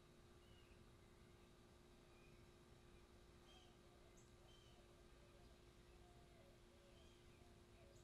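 Near silence, with a few faint, short bird chirps scattered through it.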